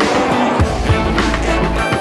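Rock music by a full band, with drums and bass under pitched guitar or vocal lines.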